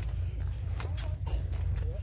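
Wind rumbling steadily on a phone microphone, with scattered short rustles of corn leaves and footsteps while walking between the corn rows.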